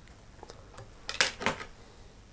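Small metal fly-tying tools clicking against each other: a few faint ticks, then two sharp metallic clicks about a third of a second apart just past the middle.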